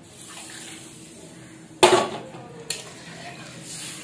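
A metal utensil strikes a cooking pot once with a loud clank about two seconds in, followed by a lighter click, over a faint steady frying hiss.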